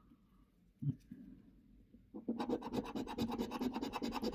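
Coin scraping the latex coating off a paper scratch card in rapid back-and-forth strokes, starting about halfway through after a single light knock.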